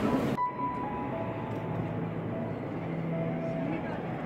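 An abrupt cut about half a second in, then a steady murmur of distant, indistinct voices echoing in a large stone interior.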